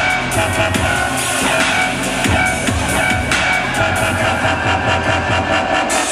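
Electronic dance music from a live DJ set, played loud over a sound system, with deep sustained bass and a steady, repeating drum beat.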